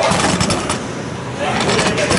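Ice hockey rink noise during a stoppage: a steady rushing haze of skates on the ice, with a few sharp clicks of sticks about half a second in and near the end, over voices of players and spectators.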